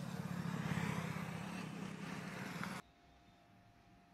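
Outdoor roadside ambience with a steady vehicle engine rumble. A little under three seconds in it cuts off suddenly to quiet room tone with a faint steady hum.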